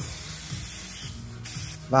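Compressed air hissing steadily through a dial-gauge tyre inflator into a car tyre's valve as the repaired tyre is pumped up to pressure. The hiss dips briefly twice, once near the middle and once near the end.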